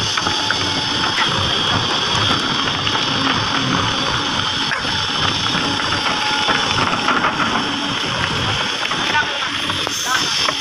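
Backhoe loader's diesel engine running steadily under load while its steel bucket scrapes and pushes soil and stones into a foundation pit, with a constant rattle and clatter of gravel.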